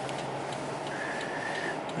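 A car's turn-signal indicator ticking steadily in the cabin, over a low steady hum from the idling car. A faint brief high tone comes about a second in.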